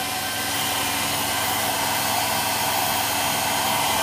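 An ignition test rig running steadily at speed, spinning a Kawasaki KH400 ignition back plate with its pickups: an even whirring hum with a faint high whine.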